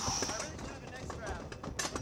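Wooden roller coaster train clicking along the track at the start of the lift hill, with a rider's faint breathing and murmuring over it.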